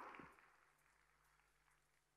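Near silence: a pause in the speech with only a faint low hum.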